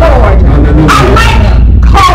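A woman's voice shouting in short, strained bursts over a steady low drone, the sound pushed to the top of the level.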